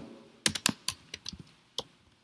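Computer keyboard keystrokes: an irregular run of quick taps starting about half a second in, thinning out to a few single taps toward the end, as text is typed.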